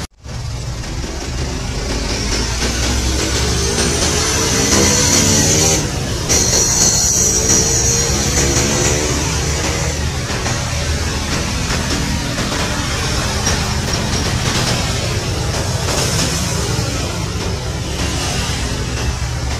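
A military utility helicopter's turbine and rotor running as it lifts off and flies low, with music playing over it.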